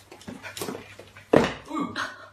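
Two small dogs play-fighting, giving short irregular vocal bursts; the loudest comes about a second and a half in.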